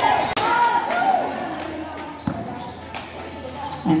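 Spectators and players calling out and cheering, then a few sharp bounces of a basketball on the concrete court in the second half.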